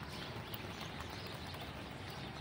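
Light rain falling, a faint even hiss with scattered small ticks of drops.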